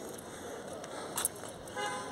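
Faint city street background with a short car-horn toot near the end, and a small click about a second in.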